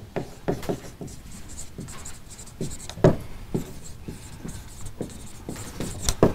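Dry-erase marker writing on a whiteboard: a quick, irregular run of short strokes and taps, the loudest about halfway through.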